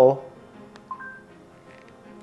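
A short two-note rising electronic chime from the TV's Google Assistant about a second in, preceded by a faint click. It is the assistant signalling that it has taken the spoken weather query.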